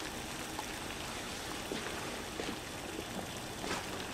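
Steady background hiss of a working commercial kitchen, with a few faint clicks.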